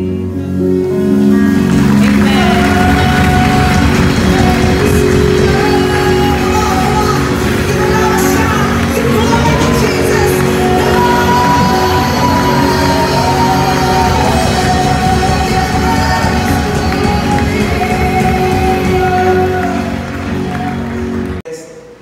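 Live worship band playing loudly: a woman sings the lead into a microphone over drums and electric guitar. The music cuts off suddenly near the end.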